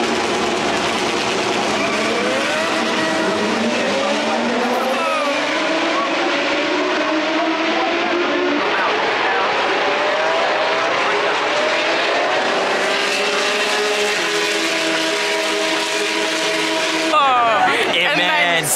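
A pack of single-seater racing cars pulling away and running past together: many engine notes overlap, each rising in pitch as the cars accelerate. Near the end it cuts off sharply to voices.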